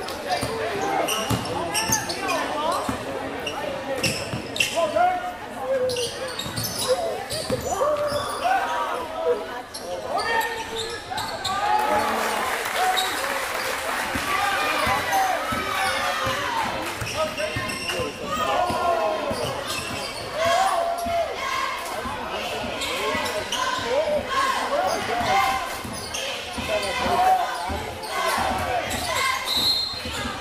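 Basketball being dribbled on a hardwood gym floor, with players' and spectators' voices echoing through a large gym. A referee's whistle sounds briefly near the end.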